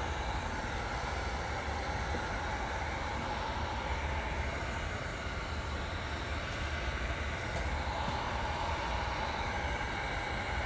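Handheld electric heat gun running steadily: a constant rush of blown air over a low motor hum, drying and stiffening a clay piece.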